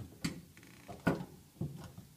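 A few sharp, unevenly spaced clicks and knocks from a Porta Power hydraulic body jack as its hand pump is worked to push out a car body pillar.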